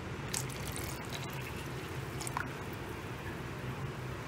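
Quiet, steady liquid sound from a pot of milky potato-and-cheese broth (caldo de queso) on the stove, with the milk just added, and a few faint ticks. A low steady hum runs underneath.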